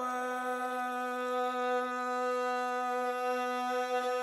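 Rababa, the Bedouin one-string spike fiddle, bowed on one long, steady, unwavering note.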